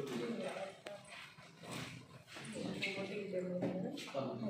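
People talking among themselves, with a few light clicks in between.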